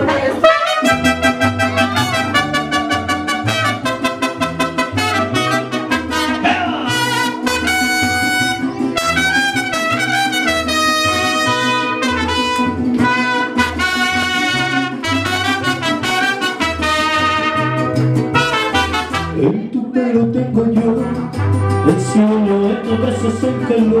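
Live mariachi band playing a song's instrumental introduction: trumpets carry the melody over strummed guitars and a stepping bass line.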